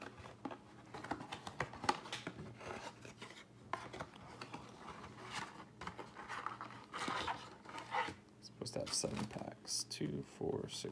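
Cardboard Playoff football card box being opened by hand and its foil-wrapped packs pulled out: irregular rustling, scraping and crinkling of card stock and wrappers.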